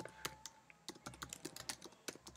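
Faint typing on a computer keyboard: a quick, irregular run of light key clicks.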